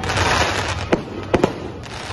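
Aerial fireworks bursting overhead: a dense crackle of many small stars, with a sharp bang about a second in and two more close together shortly after.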